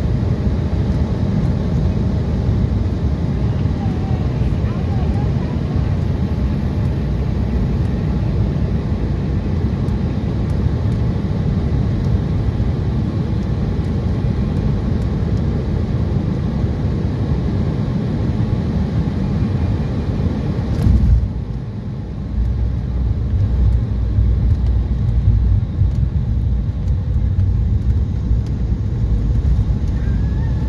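Cabin noise inside an Embraer E175 landing: a steady rumble of its GE CF34 turbofans and rushing air, broken about two-thirds of the way through by a sudden thump. After the thump the low rumble grows louder as the jet slows on the runway with its spoilers raised.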